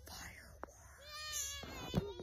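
A cat meowing once, a drawn-out high call about a second in. A sharp pop near the end is the loudest sound.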